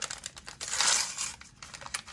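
Plastic packaging of a doll-accessory surprise bag crinkling and tearing as it is opened by hand, with a busy patch of crinkles and clicks around the middle.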